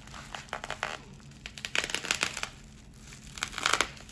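Plastic bubble wrap around a boxed album crinkling as it is handled and pulled open, in three bursts of rustling.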